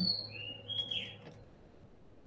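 A bird chirping: three short, high notes in the first second and a half, the later ones gliding in pitch, then only faint room noise.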